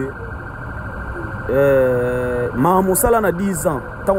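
A man's voice speaking, with one drawn-out, held vowel about a second and a half in, before more quick speech.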